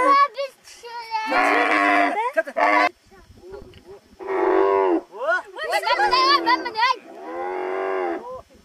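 Bactrian camel groaning in several long, drawn-out calls while it kneels and riders climb onto its saddle.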